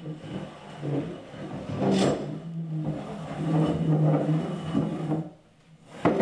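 A chair dragged across wooden floorboards, scraping with a low, steady drone, with a knock about two seconds in; the scraping stops shortly before the end.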